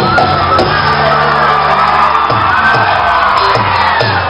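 Live band music at a stage concert: a voice holds one long note that rises and then falls, over drums with a quick run of drum hits in the second half, with shouts and whoops.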